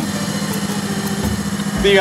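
Haskell air-driven hydraulic pump running with a steady hum, pressurizing a J-Press filter press to about 5,000 psi so its plates close slowly. A man's voice comes in near the end.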